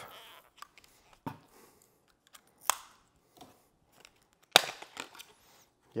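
Handling noises from an LED tube light as someone tries to pull a fitted part off it by hand: a few scattered sharp plastic clicks and light scrapes, with a louder rustling scrape about four and a half seconds in.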